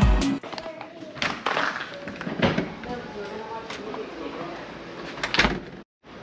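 Background music cuts off just after the start, leaving quiet room sound with faint, indistinct voices and a few knocks, the loudest a thump near the end.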